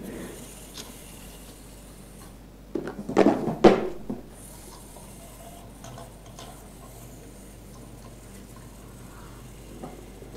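A short flurry of knocks and rattles on a tabletop, from about three to four seconds in, as the small plastic-and-metal robot is handled and set down on the mat. Otherwise only faint, steady room tone.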